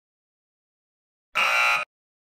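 Game show buzzer sound effect: one loud electronic tone lasting about half a second, starting and stopping abruptly near the end.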